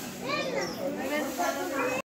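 Several people talking and calling at once in the background, children's voices among them.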